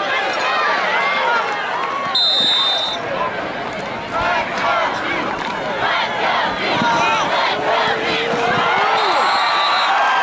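Football stadium crowd shouting and cheering, many voices overlapping. A referee's whistle blows briefly twice, about two seconds in and again near the end.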